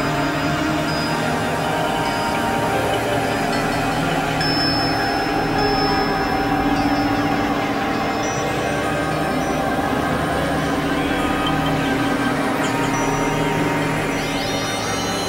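Experimental electronic drone music: dense, steady layers of synthesizer tones with a dark, eerie feel. Thin high tones glide in pitch near the end.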